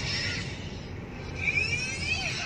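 Inside a moving car, a steady low engine and road hum, with high-pitched squeals from a baby: a short one at the start and a louder run of rising and falling squeals from about a second and a half in.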